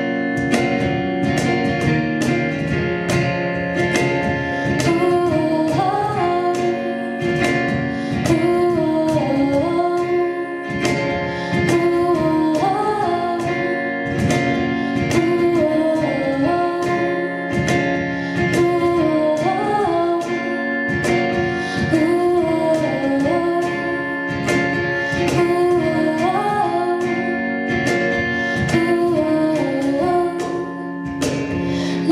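Live acoustic song: a female voice singing over strummed acoustic guitar, with a cajón struck by hand keeping the beat. The voice comes in about five seconds in, after a few bars of guitar and cajón.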